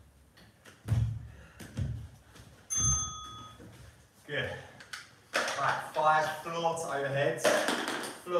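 Three dull thuds about a second apart from people working out on mats over a wooden floor, then a short bell-like ping about three seconds in; a voice talks through the second half.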